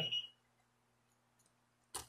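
Quiet room tone with a faint steady hum, a few faint ticks, and one short sharp click just before the end.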